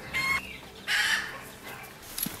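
A chicken calling twice: a short pitched squawk just after the start, then a louder, rougher call about a second in.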